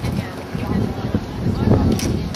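Wind buffeting the microphone: an uneven low rumble that swells and eases in gusts.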